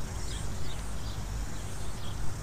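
Outdoor ambience: a steady low wind rumble on the microphone, with a few short bird chirps in the first second.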